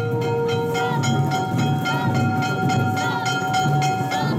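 Festival float music from a Gion yamakasa procession: steady, evenly repeated drum and bell strikes under several long held tones, one of which stops about a second in.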